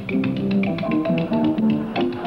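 Spoons played as a rhythm instrument: a rapid run of sharp clicking taps, about seven or eight a second, over an instrumental accompaniment playing a tune.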